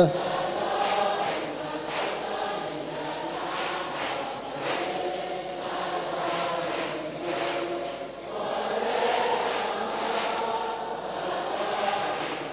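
A large congregation singing together, many voices blended into one slightly distant sound with no single lead voice standing out.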